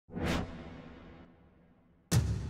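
Whoosh sound effect for an animated logo intro. It swells quickly to a peak a fraction of a second in, then fades away in a long tail with a low rumble.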